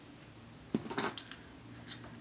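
Hands gathering and handling long hair close to the microphone: a sudden burst of rustling and sharp clicks about three-quarters of a second in, lasting about half a second, and a softer click near the end.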